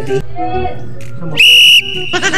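A single sharp, high whistle near the end, held steady for under half a second; it is the loudest sound here. Faint voices come before it.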